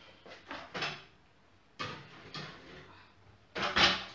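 An oven door opened and a baking pan set onto the oven's pulled-out rack: a few knocks and scrapes, the loudest a short clatter near the end.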